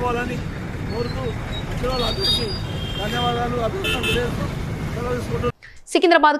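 A man speaking over steady road traffic noise, which cuts off abruptly near the end.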